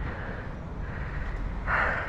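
A person breathing hard after exertion, with one heavy breath out near the end, over a low rumble on the microphone.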